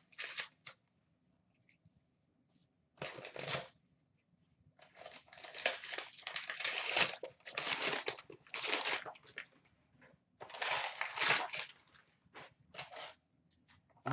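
Metallic gold wrapping paper being torn and crumpled off a cardboard box. The sound comes in irregular bursts: a short rip about three seconds in, a long run of tearing and crinkling in the middle, and a few shorter bursts near the end.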